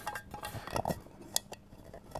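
Light metallic clicks and knocks of a metal military canteen cup being handled, its folding handle moving, with one sharp tick a little over a second in.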